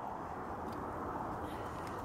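A young kitten purring close to the microphone, a steady, even low rumble.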